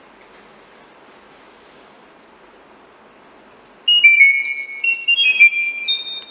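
Google Home Mini playing a Chirp data-over-sound message: a quick run of high-pitched pure tones hopping between pitches, about two seconds long, starting about four seconds in. The tones encode the command to switch on the lamp, for the Arduino Nano 33 BLE Sense's microphone to decode. Before them there is only quiet room tone.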